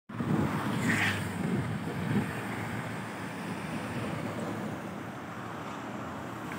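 Roadside traffic: motorcycles and a fuel tanker truck driving past, a steady rush of engine and tyre noise that is loudest in the first two seconds.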